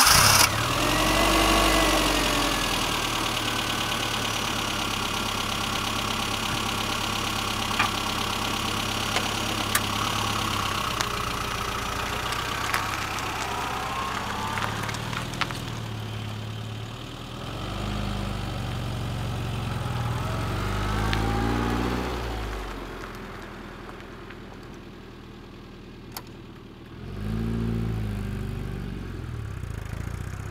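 Classic Rover Mini's A-series four-cylinder engine running as the car drives, its note rising and falling several times as it is revved and eased off. It drops back for a few seconds about two-thirds of the way in, then comes up again with a rising rev near the end.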